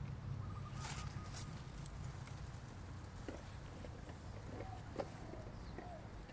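Low rumble of wind or phone handling, with a few brief rustles and clicks from the vine's leaves and stems being handled during picking.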